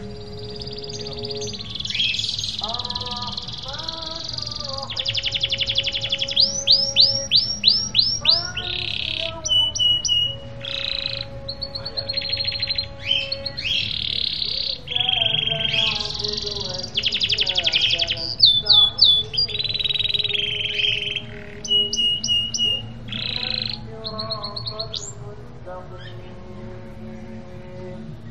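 Domestic canary singing a long, unbroken song of rapid trills and rolls, runs of sweeping notes and repeated short chirps.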